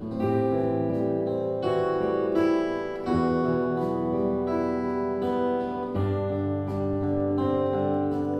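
Two acoustic guitars playing an instrumental passage, ringing chords changing every second or two.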